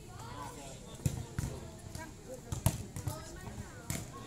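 Volleyballs being hit and landing: about four sharp thuds, the loudest a little over halfway through, over the chatter and shouts of children.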